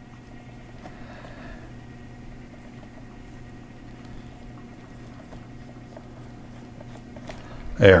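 Faint scratching of a stylus drawing strokes on a graphics tablet, over a steady low electrical hum.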